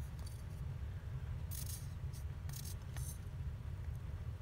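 Small craft pieces being handled on a work surface: a few brief, faint rustles and clicks over a steady low hum.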